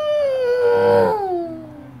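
A long wordless howl in a high, falsetto-like voice, held and then sliding slowly down in pitch, with a second, lower voice joining in about halfway through.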